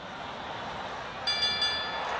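Stadium crowd noise swelling, with a last-lap bell rung rapidly a few times about a second and a quarter in, signalling the final lap of an athletics track race.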